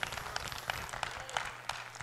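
Light, scattered clapping from a church congregation, a few irregular claps a second, fairly faint.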